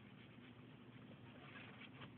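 Near silence, with faint soft scrubbing of an ink-blending tool rubbed gently over a paper tag.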